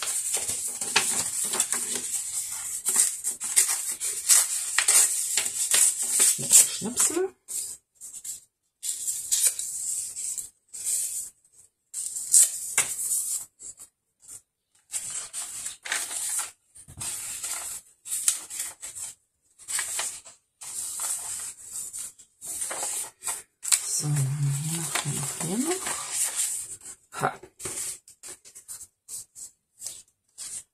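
Paper being torn and rustled by hand: a continuous tearing and crinkling for the first several seconds, then short separate rustles as journal pages are handled and turned. A brief low hum of a voice comes about three-quarters of the way through.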